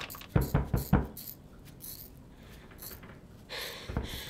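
Four quick knocks on a door in the first second, then a quieter stretch with a short hiss near the end.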